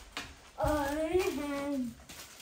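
A child's voice holding one long, wordless sung note for about a second and a half. The note wavers and drops in pitch near the end.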